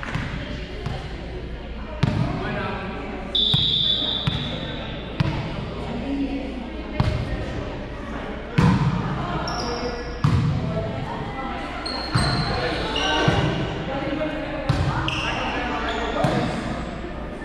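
Volleyball rally in a large, echoing gym: sharp slaps of players hitting the ball about every one to two seconds, with players' voices and a few short high squeaks in between.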